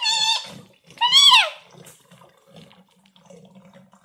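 A young child's high-pitched squeals of excitement: one ending just after the start, a second about a second in that rises and falls. Faint water trickling and gurgling through the tornado tube between two joined plastic bottles runs underneath.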